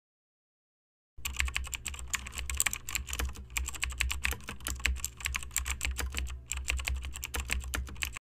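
Rapid keyboard typing clicks, used as a typing sound effect, starting about a second in and running in quick runs with a couple of brief pauses, over a low steady hum.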